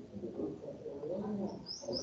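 A bird chirping in the background: a quick run of short high chirps, about four a second, starting near the end, over a faint low murmur.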